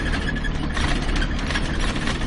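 Steady low engine rumble with road noise, heard from inside a moving or idling vehicle.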